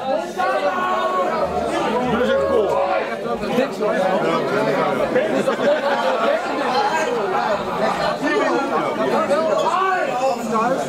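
Crowd chatter in a large hall: many overlapping voices talking at once, none of them clear.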